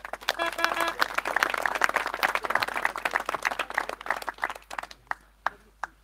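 A small crowd applauding a welcomed speaker: dense hand clapping that starts right away, thins out and dies away near the end.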